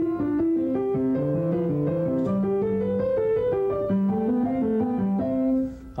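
Piano played in two parts, a moving lower line under an upper melody in fairly even notes, stopping just before the end. It is a demonstration of how a student might first play a prepared piece: notes and rhythm in place, without worked-out interpretation.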